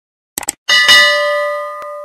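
Two quick mouse-click sound effects, then a bell chime sound effect that rings out and slowly fades, with a faint click near the end: the sounds of an animated subscribe button and notification bell.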